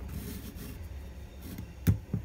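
Quiet handling of a flat shoelace being pulled out of the eyelets of a leather sneaker, over a low steady hum, with one sharp click near the end.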